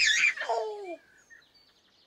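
A baby giggling, with pitch sliding downward, ending about a second in; faint bird chirps follow.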